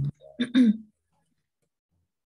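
A person briefly clearing their throat, heard over a video-call microphone, in the first second.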